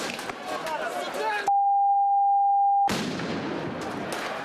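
Crowd noise from a street clash with riot police: many voices shouting, with scattered sharp knocks. About a second and a half in, all other sound is cut out for about a second and a half by a steady, high censor bleep tone.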